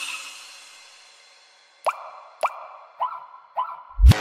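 Breakdown in an electronic siren beat: the bass and drums drop out, leaving a fading wash, then four short upward-sliding synth blips about half a second apart. The full beat comes back at the very end.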